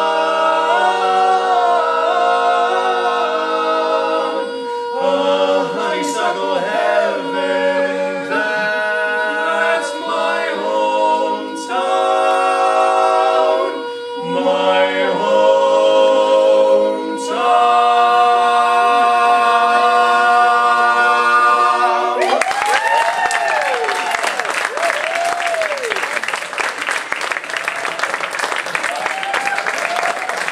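A male a cappella quartet of four voices singing in close harmony, ending the song on a long held chord. About 22 seconds in it stops and audience applause follows.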